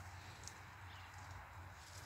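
Near silence: quiet outdoor background with a faint, steady low hum and no distinct sound.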